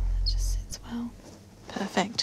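A low music drone fades out about half a second in. Short, soft whispered voice sounds follow, the clearest near the end.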